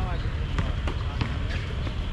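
A basketball being dribbled on an outdoor hard court: a run of sharp bounces about three a second, with a player's short shout at the start and a steady low rumble underneath.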